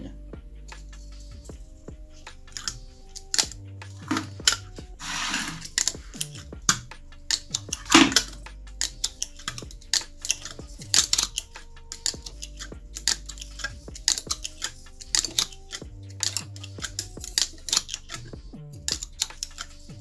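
Winding wire being pulled turn by turn into a slot of a TAAM angle grinder armature by hand: irregular sharp clicks and scrapes as the wire is drawn through and snugged down, laying the 19 turns of the first layer of a rewind. Soft background music runs underneath.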